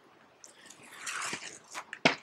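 Paper backing sheet being peeled off a vinyl sticker: a faint crackling rustle that starts about half a second in, with a few small clicks near the end.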